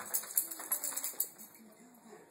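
Metal tags on a dog's collar jingling in quick rattling bursts as the dog moves, strongest for about the first second and then fading.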